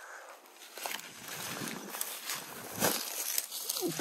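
Footsteps rustling and crunching through dry grass and leaf litter, several uneven steps about one to two a second.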